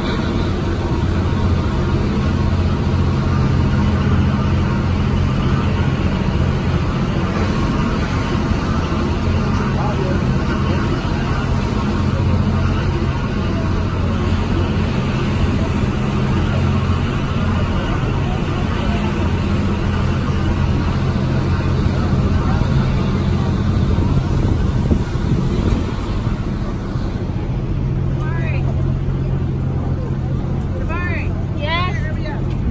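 Steady low drone of a harbour ferry's engines heard from the open deck, with a constant rush of wind and water.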